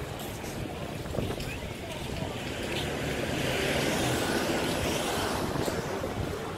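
Outdoor seaside street ambience: steady traffic noise and the murmur of people's voices, with a rushing swell of noise in the middle that then eases off.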